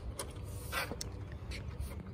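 Light plastic clicks and handling noise, two sharp clicks about a second apart, as the Water Tech Volt FX-8LI pool vacuum's push-button latches are pressed in and it is fitted onto its telescopic pole, over a steady low outdoor rumble.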